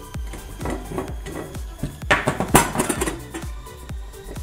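Background music with a steady beat, with metallic clatter and scraping about two to three seconds in as a handheld can opener and the cut-off lid of a large steel can are handled.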